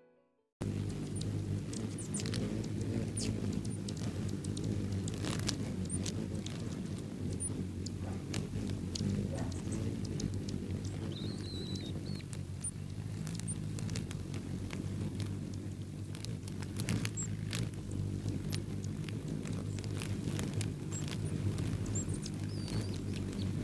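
Wings of a large flock of hummingbirds, Anna's among them, hovering around a feeder make a steady low hum. It starts suddenly about half a second in, with many short squeaky chips and clicks from the birds throughout.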